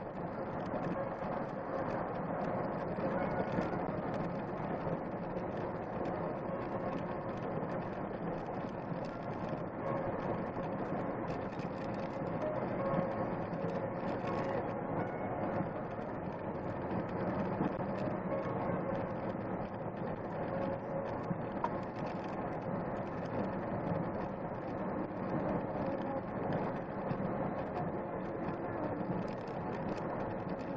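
Steady road noise inside a vehicle driving at highway speed: a constant drone of engine and tyres with a faint steady hum running through it.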